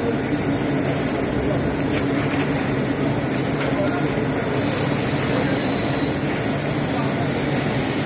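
Steady drone and hum of plywood-mill machinery running, holding an even level.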